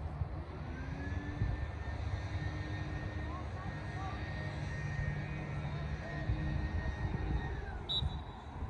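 Outdoor ambience of a steady engine-like drone: a high hum that rises in pitch about a second in, holds, and falls away near the end, over a constant low rumble, with a few faint distant voices.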